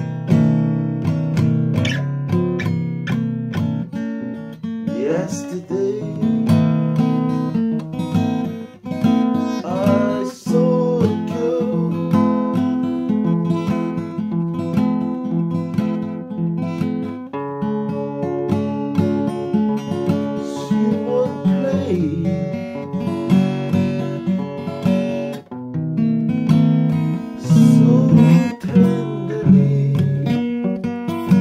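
Acoustic guitar music, with strummed chords and picked notes playing continuously.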